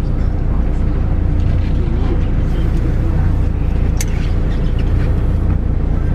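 Steady low engine and road rumble of a moving vehicle, heard from inside the cabin, with a single sharp click about four seconds in.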